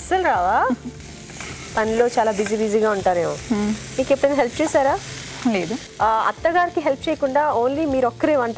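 Diced vegetables sizzling in oil in a frying pan as they are stirred with a wooden spatula. Women's voices talk and laugh loudly over the frying for most of the time.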